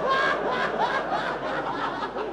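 Several men laughing at once, their voices overlapping throughout.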